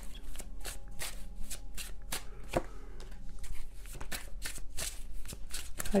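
A tarot deck being shuffled by hand: a quick, uneven run of papery card clicks, several a second.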